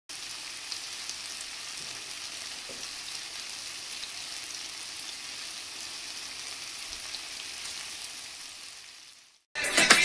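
Piyaju (onion-and-lentil fritters) shallow-frying in hot oil in a frying pan: a steady sizzle with small crackles. The sizzle fades out just before music starts near the end.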